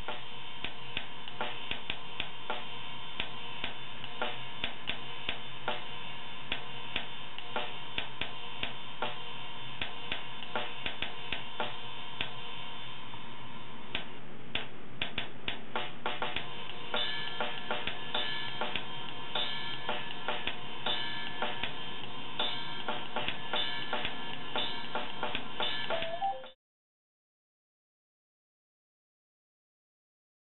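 Drum loop from the Tempo Master metronome app playing a steady kit beat at the tempo being set, slowed to around 100 BPM, with busier cymbal hits from about halfway. It cuts off suddenly near the end.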